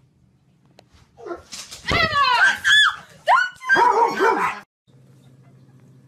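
A burst of loud, high-pitched yelping cries, sliding up and down in pitch for about three seconds, that stops suddenly; after a short break a low steady hum of a car interior is heard.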